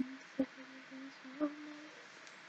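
A person softly humming a short tune: about four short notes at one pitch, then a longer, slightly higher note near the end, with two sharp taps a second apart.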